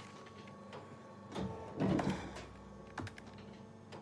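Quiet desk work: papers being handled and a few soft taps and rustles, the loudest about halfway in, over a faint steady hum.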